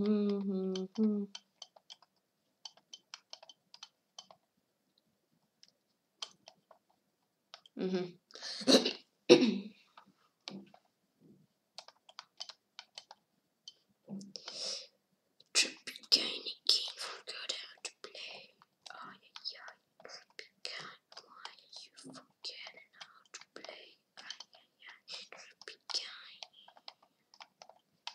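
A boy whispering and muttering to himself, soft and breathy, beginning with a short hummed "mm" and with a louder stretch about eight to nine seconds in.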